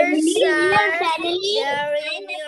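Children's voices heard over a video call, more than one at a time, in a drawn-out, sing-song way.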